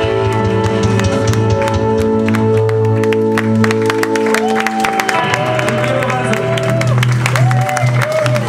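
A rock band's final held chord on electric guitars rings out, then stops about halfway through. The audience claps and cheers, with shouting voices in the second half.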